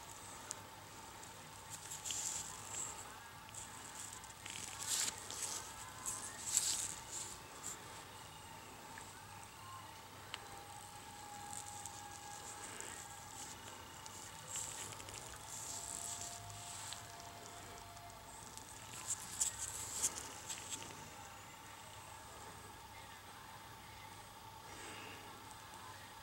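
Quiet room tone with faint, scattered rustles and crackles of nitrile-gloved fingers handling a small 3D-printed plastic part. A few faint, brief steady tones sound in the background around the middle.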